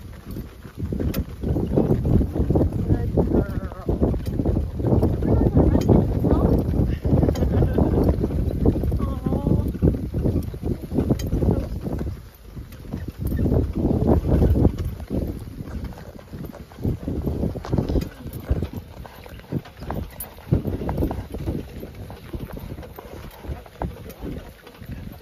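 Wind buffeting the microphone while a horse-drawn cart is driven across open ground. The rumble is heavy and gusty for about the first twelve seconds, then eases, with scattered sharp knocks and clicks throughout.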